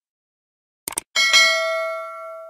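Subscribe-button animation sound effect: a quick double mouse click about a second in, followed at once by a bright notification-bell ding that is the loudest sound and rings on, fading slowly.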